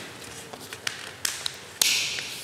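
Paper sticker sheet being handled in the fingers: a few small crisp clicks and crackles, then a short papery tearing sound near the end as a sticker is peeled off its backing.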